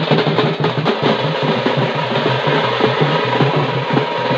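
Fast, continuous drumming with dense rapid strokes, over a low steady droning tone.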